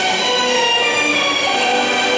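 Film soundtrack music: sustained orchestral string notes held in chords, shifting pitch every half second or so.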